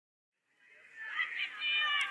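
A high-pitched voice calling out, starting abruptly about half a second in and holding a steady note near the end.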